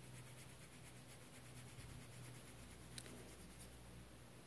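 Faint scratching of a waterbrush tip in quick short strokes over textured watercolour paper, rewetting a dried Inktense ink-pencil swatch; the strokes stop shortly before the end. A single sharper tick comes about three seconds in, over a steady low hum.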